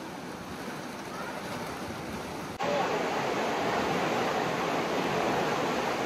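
Steady rushing noise of sea surf breaking on the rocks below. About two and a half seconds in it jumps suddenly to a louder, rougher hiss.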